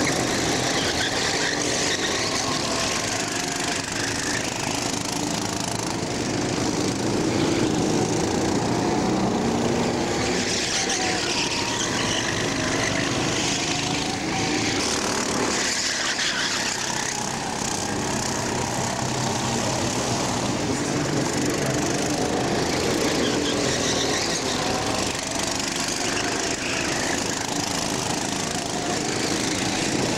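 Racing karts' small engines running at high revs as they lap the circuit, their pitch rising and falling through the corners.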